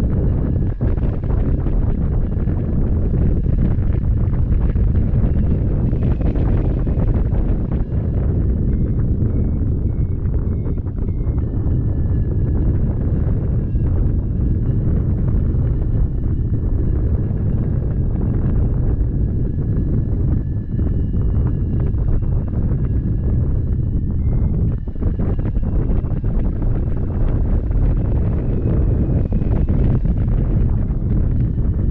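Airflow of a hang glider in flight buffeting the microphone of a camera mounted on the glider: a loud, steady, low rumbling wind noise that only dips briefly now and then.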